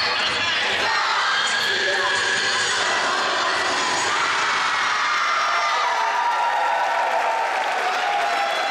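Many voices shouting and cheering together at the close of a yosakoi dance, with a long drawn-out shout held through the last few seconds.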